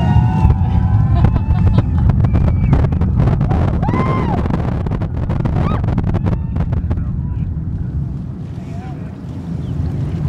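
Distant roar of an Atlas V rocket's RD-180 first-stage engine arriving after liftoff: a loud low rumble with sharp crackling, the crackle thinning out after about seven seconds. Spectators' voices and a whoop ride over it.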